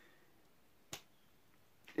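Quiet room tone broken by a single short, sharp click about halfway through.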